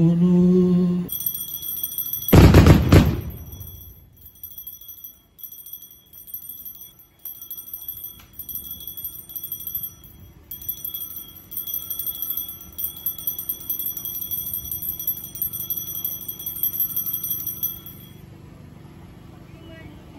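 Altar bells shaken in repeated rapid peals, a high jingling ring with short pauses, marking the consecration and elevation of the host at a Catholic Mass. A single loud thump about two seconds in is the loudest sound, and a chanting voice ends about a second in.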